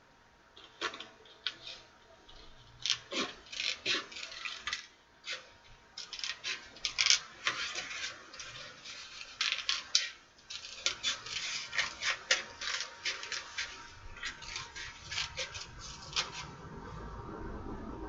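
Scissors cutting paper in irregular runs of crisp snips, with paper rustling between them and brief pauses.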